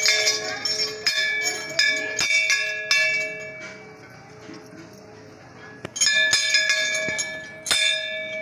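Large hanging brass temple bell rung by hand, struck several times in quick succession with long ringing tones. The ringing dies down around the middle, then the bell is struck again about six seconds in and once more near the end.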